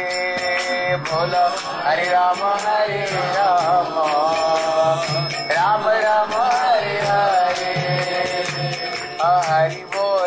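Devotional kirtan: a voice sings a drawn-out, sliding melody over hand cymbals struck in a steady rhythm and a repeating low drum beat.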